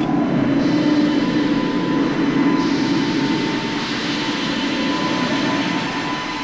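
Film sound effect of a steady, jet-like rushing drone with a thin held tone above it, easing slightly near the end.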